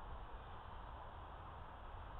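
Quiet outdoor background: a faint, even hiss with a low rumble and no distinct sound.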